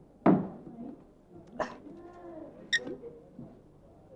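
A loud thump just after the start, then crockery sounds at the tea table: a knock about a second and a half in and a sharp, ringing clink of china near three seconds in.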